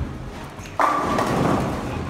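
Bowling ball crashing into the pins about a second in, followed by a second of pins clattering and scattering down the lane, echoing in a large hall.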